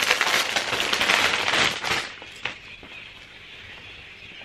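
Plastic packaging crinkling and rustling as a garment is unwrapped, dense and crackly for about two seconds, then quieter with a single click.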